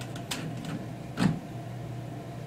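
A few light plastic clicks and one louder knock about a second in as a Rubik's Cube is pressed back onto the stepper motors' 3D-printed feet in the robot's frame, over a steady low hum.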